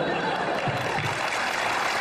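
Studio audience applauding, a steady spread of clapping.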